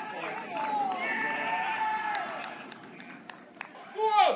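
Footballers' voices shouting in celebration of a goal: two long, drawn-out shouts, then a few sharp knocks near the end.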